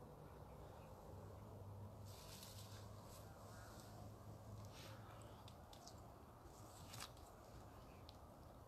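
Near silence: faint outdoor night ambience with a low hum and a few soft ticks.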